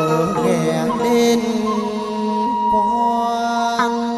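Chầu văn (hát văn) ritual singing: a man's voice holding long, bending vowel notes over a đàn nguyệt moon lute accompaniment.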